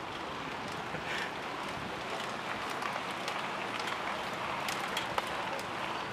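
A pack of mountain bikes rolling past close by: a steady rush of tyres on tarmac, with many scattered sharp clicks from the bikes' freewheels and drivetrains.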